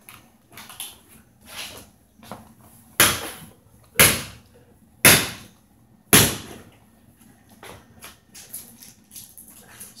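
A partly frozen plastic water bottle being banged against a hard surface to crack the ice inside: four hard knocks about a second apart starting about three seconds in, with lighter knocks and taps around them.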